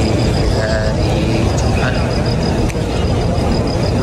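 Steady hubbub of a large, dense crowd, with scattered voices.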